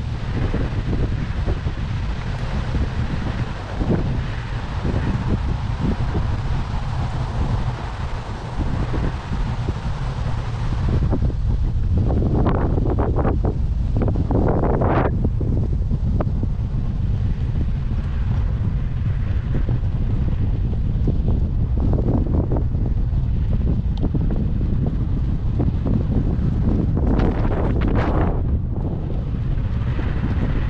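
Wind buffeting the microphone: a loud, even rumble, with a few brief louder bursts about halfway through and again near the end.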